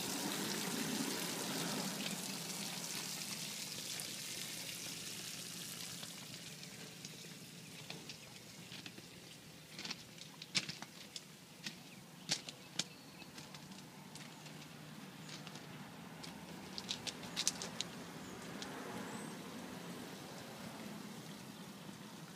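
Faint, steady hiss and splash of water running from a garden hose at an outboard's lower unit. It fades over the first several seconds, with scattered light clicks and taps in the middle.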